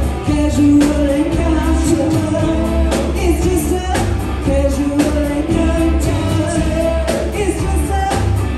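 Live rock band playing, with a woman singing long held notes over a drum-kit beat, bass, electric guitar and keyboards.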